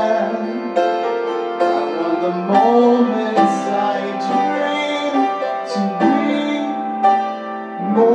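Live piano and voice: upright piano chords changing about once a second under a man's voice holding long sung notes.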